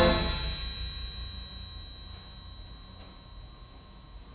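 Carousel band organ waltz ending on a final chord with a bright struck clang right at the start. The held tones then ring on and fade away steadily.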